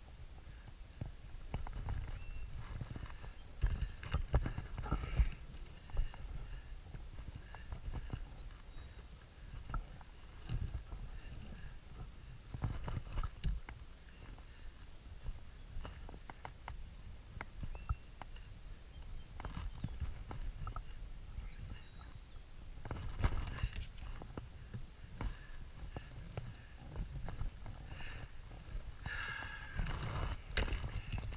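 Irregular knocks and clicks from unhooking a smallmouth bass in a landing net with metal forceps and handling the net and fish, with small clusters of louder knocks several times.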